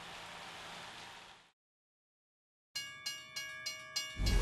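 Steady running noise of a model train that fades out about a third of the way in. After a second of silence, a bell strikes rapidly, about four ringing strikes a second, in the manner of a railroad crossing bell.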